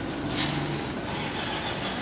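Street noise with a motor vehicle running nearby, a steady rumble with a faint low hum in the first second.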